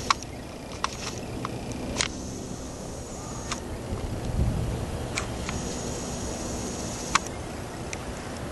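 Outdoor background noise: a steady low rumble that swells briefly about four to five seconds in, with a few sharp clicks scattered through it.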